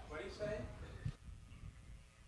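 Faint off-mic speech, a voice heard briefly and at a distance in the first second, then low room tone.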